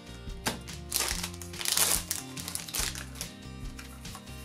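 Background music with steady held tones, over the crinkling and rustle of a trading-card booster pack wrapper and cards being handled, loudest around the middle.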